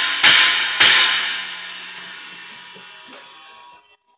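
A Zildjian 12-inch Oriental China with an 8-inch splash stacked on top, struck twice in quick succession with a drumstick, about half a second apart. The bright wash rings out and fades away over about three seconds.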